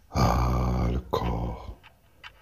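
A deep male voice speaking two short phrases, most likely announcing the poem's title and author before the recitation.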